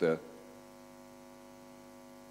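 Steady electrical hum, several steady tones stacked one above another, holding at a constant level through a pause in speech.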